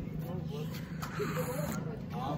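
Faint background voices over a steady low engine hum.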